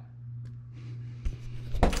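A steady low hum, joined from a little past the middle by low rumbling and rustling, then a sudden clatter just before the end.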